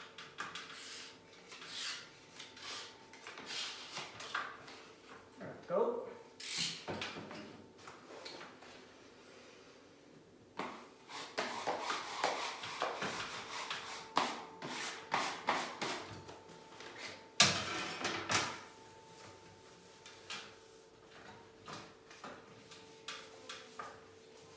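Wallpaper being handled and smoothed by hand onto a wall: paper rustling and rubbing, with scattered clicks and knocks and one sharp click about two-thirds of the way through.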